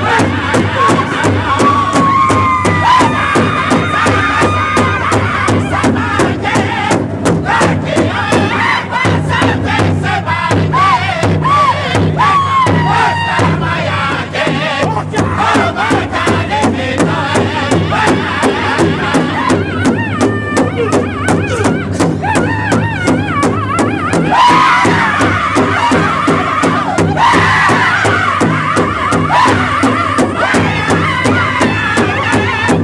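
Northern-style powwow drum group: several men strike one large drum together in a steady, even beat while singing a high-pitched chant with falling glides. The singing swells louder about 24 seconds in.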